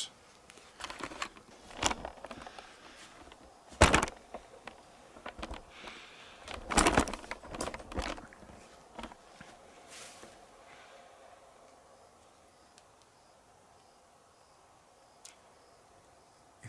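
Handling noise from a hand-held camera being moved and repositioned: scattered knocks, rubs and clicks, the loudest knock about four seconds in and a cluster near seven seconds. The last few seconds are near silence with a faint high pulsing.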